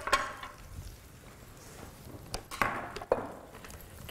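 Serving utensils knocking and clinking against a platter and dishware as noodles are served out. There is one knock at the start and a cluster of several about two and a half to three seconds in.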